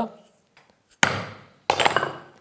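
Two sharp hammer strikes on a corner chisel, driving its square blade into walnut to square off the rounded corner of a routed rebate. The first strike comes about a second in. The second, rougher one comes near the end.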